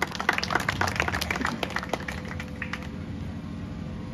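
Scattered hand clapping, irregular claps thinning out and dying away about three seconds in, over a faint steady hum.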